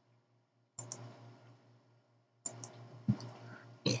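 A quiet room with a faint steady low hum. Two quick double clicks come about a second and a half apart, then a single low thump near the end.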